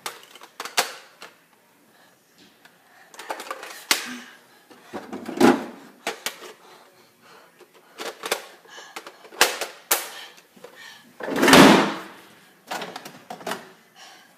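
Irregular clicks, knocks and clatter of plastic toy foam-dart blasters being handled, with a louder, longer noise about eleven and a half seconds in.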